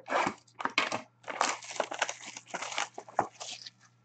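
Shrink-wrap plastic on a sealed hockey card box being slit with a box cutter and torn away: a run of irregular crinkling and tearing noises that stops just before the end.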